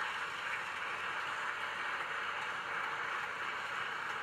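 Audience applauding steadily in a church.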